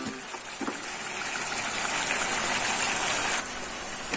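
Steady hiss of a tomato-based chicken stew simmering in a pot on a gas stove. The hiss cuts off suddenly about three and a half seconds in.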